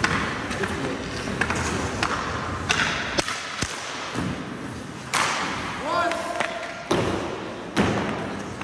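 Ice hockey shooting drill: sharp cracks of sticks on pucks and pucks hitting goalie pads and boards, four hits a second or two apart, over skate blades scraping the ice.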